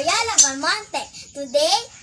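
A young girl speaking.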